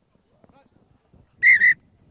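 Rugby referee's whistle blown in two short, sharp blasts about one and a half seconds in, stopping play for an infringement that leads to a scrum.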